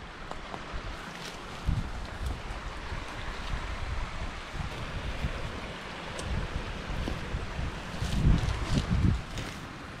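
Wind buffeting a small action-camera microphone in low gusts, strongest about eight to nine seconds in, over a steady outdoor hiss, with light rustling and steps through grass and scrub.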